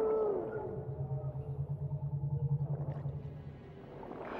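Underwater sound design with a whale-like call: a long moan gliding down in pitch at the start, then a low pulsing hum for a few seconds that fades near the end.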